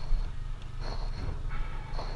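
Small motorbike engine running steadily while riding, with tyre and road rumble from the dirt and gravel track.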